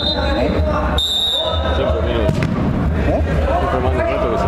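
Players' voices calling out on an indoor five-a-side pitch, with a short, steady referee's whistle blast about a second in. A sharp knock follows about a second later, as the ball is kicked to restart play.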